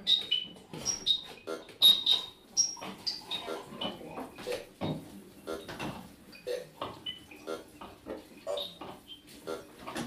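Speak & Spell robotic voice samples sequenced by TidalCycles, short synthetic syllables repeating in a loop about twice a second. High electronic blips sound over the first three seconds.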